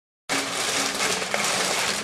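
Paper takeout bag rustling and crinkling as it is handled and opened. It starts abruptly about a quarter second in and keeps on as a loud, even rustle.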